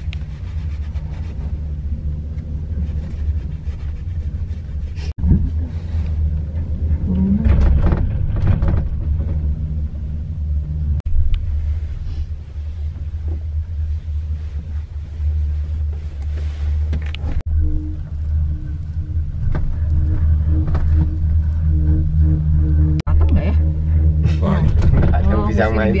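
Steady low rumble of a gondola cabin riding up its cable, heard from inside the cabin.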